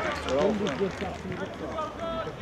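Indistinct voices of players and spectators talking and calling out in the open air, with a low steady rumble underneath that fades about one and a half seconds in.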